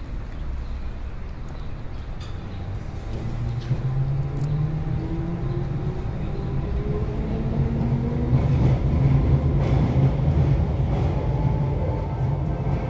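An electric train approaching: a low rumble that grows steadily louder, with a motor whine rising in pitch.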